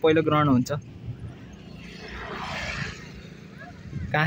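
A distant engine passing by: a smooth rush of noise that swells to a peak about halfway through and then fades away.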